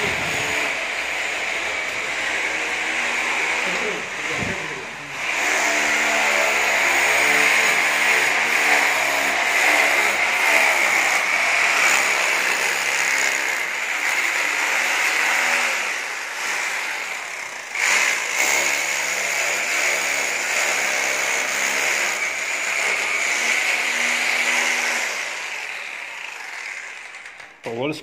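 Handheld power drill boring into a brick-and-mortar wall, running steadily with short breaks about four seconds in and about eighteen seconds in, and stopping shortly before the end. It is drilling holes for injecting anti-termite chemical into the wall.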